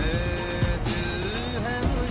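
Hindi film-style song sung by a male vocalist over backing music, with long held notes that bend in pitch.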